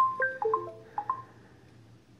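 A short electronic notification chime: a quick run of about eight bright, marimba-like notes over a second, fading out, sounded as the LG G4 phone is connected to the laptop by USB cable.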